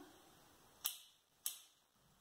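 Two sharp snips about half a second apart, each dying away quickly: ikebana scissors cutting a flower stem.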